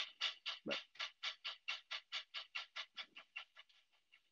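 Model steam locomotive's onboard sound system chuffing rapidly and evenly, about six or seven chuffs a second, fading away near the end as the engine coasts on high momentum with the throttle turned down.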